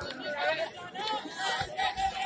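Several spectators' voices talking at once, an overlapping chatter of speech.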